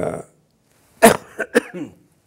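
A person coughs once, sharply, about a second in, followed by a few shorter throat sounds, as if clearing the throat.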